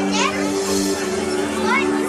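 Shop background music with long held notes, under a mix of shoppers' voices, including high children's voices that slide up and down twice.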